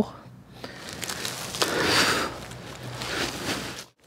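Dry fallen leaves and ghillie-suit material rustling and crunching as a person gets up from lying in the leaf litter. The noise swells to its loudest about two seconds in and cuts off suddenly near the end.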